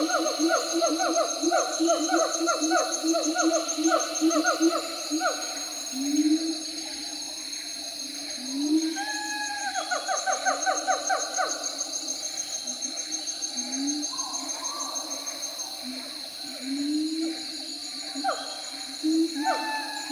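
Monkeys calling: fast runs of repeated hoots for the first few seconds, then short rising whoops every few seconds, over a steady high-pitched buzz.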